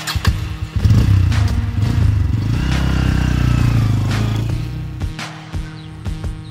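A motorcycle engine comes in loud about a second in, revs, then fades out near the end, over background music.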